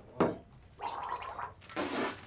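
Water sloshing and splashing in an enamel washbasin, with a sharp knock just after the start and a louder splash near the end.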